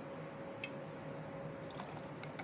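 Faint handling of a steel bar jigger and a glass rum bottle as rum is measured out and tipped into the shaker, with a few light ticks over a steady low hum.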